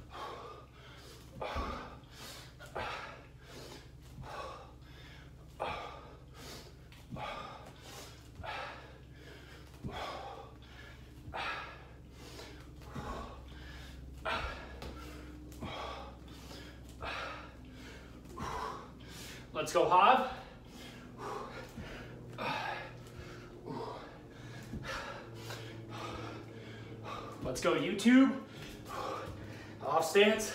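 A man breathing hard during fast side-to-side ice-skater bounds: a short, sharp exhale with each bound, about three every two seconds, with a louder, voiced breath about twenty seconds in.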